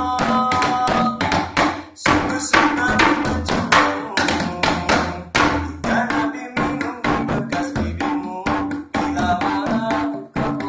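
Hand drums struck with the palms and fingers in a fast, busy rhythm of sharp slaps and taps, accompanying a sholawat song.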